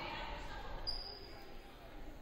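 A basketball bouncing on a hardwood gym floor during a stoppage in play, over fading crowd chatter in the gym, with one short high squeak about a second in.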